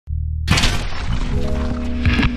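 Intro sound effect for a retro TV switching on: a low hum, then about half a second in a sudden loud burst of crackling static-like noise. Steady musical notes come in under the noise.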